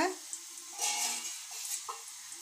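Bitter gourds sizzling in hot oil in an uncovered kadhai. The flame has just been turned off, but the oil is still hot. The sizzle swells briefly about a second in.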